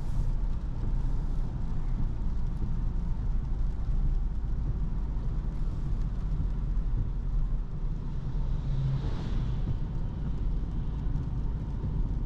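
Cabin noise inside a 2024 Opel Corsa driving on a wet road: a steady low road and tyre rumble. A brief hiss swells and fades about nine seconds in.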